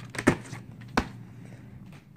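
A plastic VHS clamshell case being handled and shut: a few light clicks, then a sharper click about a second in.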